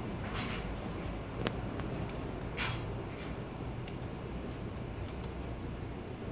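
Quiet room tone: a steady low hum, with a faint click about a second and a half in and two soft breathy hisses.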